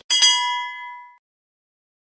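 Notification-bell sound effect for a subscribe animation: a short click, then one bright bell-like ding that rings for about a second and fades away.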